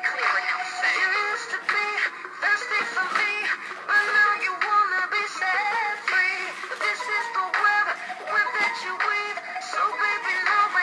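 Pop song playing: a sung melody line over a backing track, the vocal sounding electronically processed.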